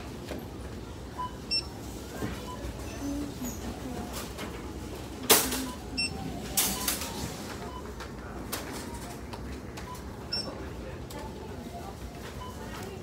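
Indoor shop background: a low murmur with scattered short electronic beeps, like checkout scanners and registers. Two louder brief rustles or knocks come in the middle as the phone is handled against clothing.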